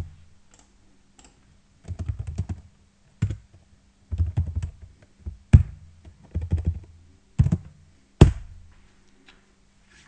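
Typing on a computer keyboard in short bursts of rapid keystrokes, with a few harder single strokes, the last and loudest about eight seconds in.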